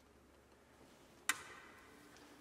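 Quiet hall room tone, broken by a single sharp click about a second and a quarter in that rings briefly in the hall.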